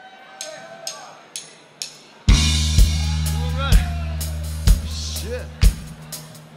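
Live rock band starting a song. Four faint, evenly spaced clicks count it in, then a little past two seconds the full band comes in loud on a held low bass note, with the kick drum hitting about once a second.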